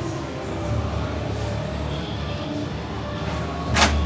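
Haunted-maze background soundtrack with a low rumble. Near the end comes a short, loud hiss of air, typical of a pneumatic air-blast scare effect.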